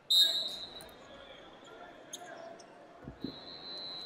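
Referee's whistle blown to restart the wrestling bout: a loud, shrill single-pitch blast right at the start that trails off over a second or two. A couple of dull thumps follow about three seconds in, then another whistle.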